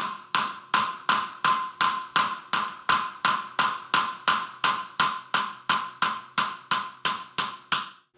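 A hammer strikes the spine of a heat-treated steel knife blade in steady, even blows, about two and a half a second, each with a short metallic ring. The blows drive the blade's edge down through a nail laid on a steel block.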